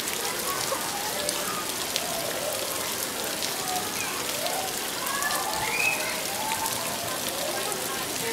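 Steady rain falling, a constant hiss dotted with many small drop ticks, with faint indistinct voices in the background.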